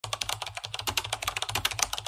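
Typing sound effect: rapid computer-keyboard key clicks, about a dozen a second, keeping pace with on-screen text being typed out letter by letter.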